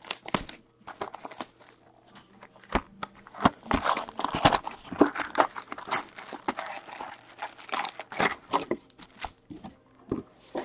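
Plastic shrink wrap crinkling and tearing as it is stripped off a cardboard trading-card box. This is followed by the box being opened and the foil packs handled. The crackling is sparse at first and turns into a dense run of crinkles and sharp clicks through the middle.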